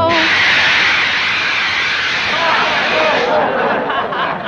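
Wind sound effect: a loud, steady rushing hiss of a gust that starts abruptly and dies away a little after three seconds in, with faint wavering tones beneath it as it fades.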